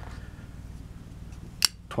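A single sharp click about one and a half seconds in as a Chris Reeve Sebenza folding knife is handled and set down by the other knife on a cloth-covered table, over a faint steady low hum.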